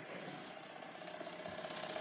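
Small model steam engine running and driving a LEGO mechanism: a faint, steady mechanical running sound.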